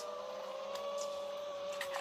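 Steady whine of an FPV quadcopter's brushless motors and props at a constant throttle, one clear tone slowly sinking a little in pitch.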